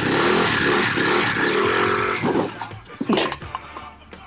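Small motor scooter engine running loudly with revving. A little past halfway it drops away sharply as the scooter moves off, with a couple of short rises in pitch after.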